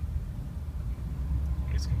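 Low steady rumble of a 2003 Chevrolet Suburban's V8 and its road noise, heard inside the cabin while it cruises slowly. A voice starts near the end.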